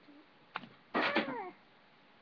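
A domestic cat meowing once, a short cry that falls in pitch, about a second in.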